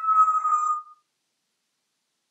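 African grey parrot giving one long whistle that slides slowly down in pitch and stops about a second in.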